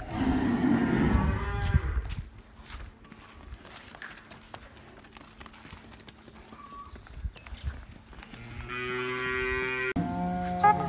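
Large humped zebu bull bellowing loudly for about two seconds at the start while being led on a rope, followed by quieter scattered clicks.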